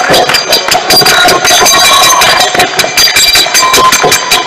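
Kirtan instruments played fast: dense, even strikes of karatalas hand cymbals and drum at about five or six a second, with ringing cymbal tones and held harmonium notes.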